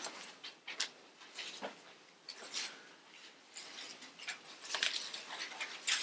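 Thin Bible pages being leafed through: a string of short papery rustles and flicks spread over several seconds.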